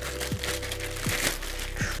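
Clear plastic wrapping crinkling as a soundbar is handled and slid out of its protective bag, over steady background music.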